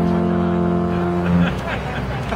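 Three alphorns sounding a held chord together, swelling a little and then stopping about one and a half seconds in, after which people's voices are heard.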